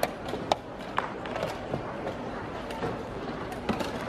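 Busy indoor hall ambience: a steady murmur of background noise and distant voices, with a few sharp clicks and knocks, mostly in the first second and once more near the end.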